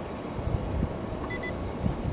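Wind buffeting the camera microphone, a low rumble with several stronger gusts. Two short, high electronic beeps in quick succession sound just past the middle.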